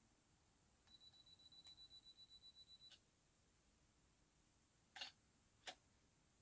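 Canon DSLR's self-timer beeping rapidly for about two seconds, then the shutter firing a long exposure, heard as two sharp clicks near the end.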